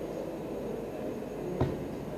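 A pause in speech: steady, low room noise, with one short click about one and a half seconds in.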